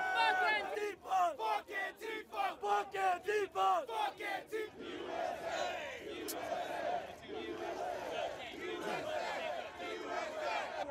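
A crowd of men shouting a rhythmic chant, about two or three sharp shouts a second. About five seconds in, it breaks up into loose, overlapping yelling and cheering.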